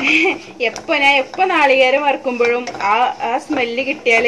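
A woman talking without pause, narrating in Malayalam, with light scraping of a wooden spatula stirring grated coconut in a pan faintly beneath her voice.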